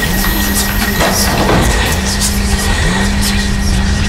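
Loud, harsh soundtrack drone: a dense rumbling noise with a low hum that dips about once a second and scattered crackles.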